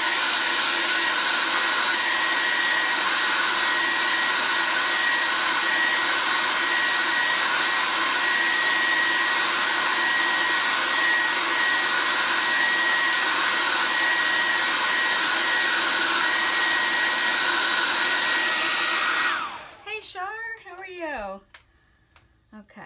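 Handheld hair dryer running steadily with a high whine, heat-setting freshly screen-printed ink on a placemat. It is switched off and winds down near the end.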